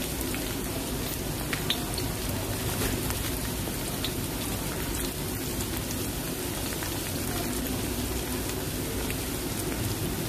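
Chopped garlic and onion sizzling in hot oil in a wok: a steady frying hiss with scattered small pops.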